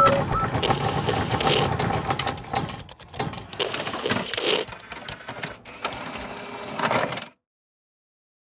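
Animated logo-reveal sound effects: a dense, machine-like whirring texture full of rapid clicks and ticks, with brief beeps at the start. It cuts off suddenly about seven seconds in.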